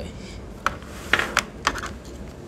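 HDMI cable plug being worked into the HDMI OUT (TV ARC) port on the back of a soundbar: a series of about five sharp plastic clicks and knocks in the second half.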